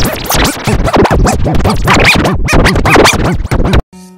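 A children's cartoon intro jingle run through a heavy warping audio effect. Its pitch swoops up and down over and over, several times a second, like record scratching. It cuts off abruptly just before the end.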